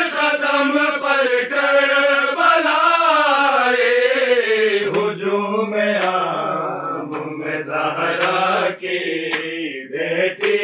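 A group of men singing an Urdu noha, a mourning lament, together without instruments, in long, drawn-out, wavering melodic lines. About halfway through a lower voice joins under the melody.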